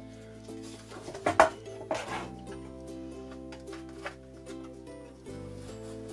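Soft background music with long held chords. A few brief rustles and taps from paper being handled on a paper trimmer come about one and two seconds in.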